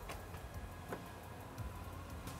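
Power tailgate of a Subaru Forester closing under its own electric motor: a quiet, steady hum with a couple of light clicks, one near the start and one about a second in.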